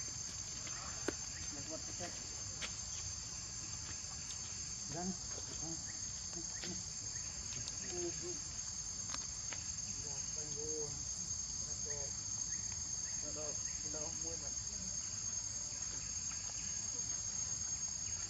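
Steady, high-pitched chorus of insects, unchanging throughout, with a single short click about a second in.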